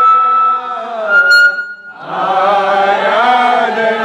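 A man singing a slow worship song into a microphone, with long held notes and a short break about halfway through.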